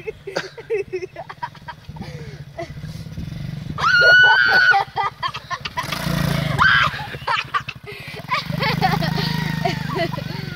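A small pit bike engine runs at low speed as it is ridden. Its note swells as the bike passes close by about six seconds in, and again as it is throttled near the end.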